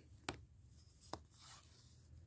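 Near silence, with two faint clicks from cardboard baseball cards being handled: one just after the start and one about a second in.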